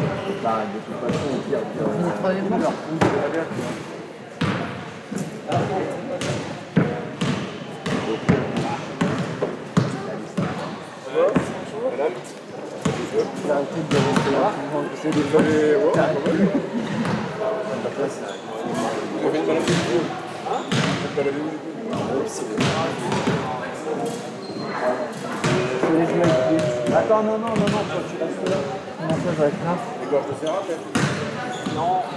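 Basketballs bouncing on a gym floor during warm-up: many irregular, overlapping knocks throughout, with people talking in the background.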